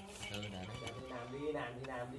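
A man's voice, quiet and unclear, over soft acoustic guitar.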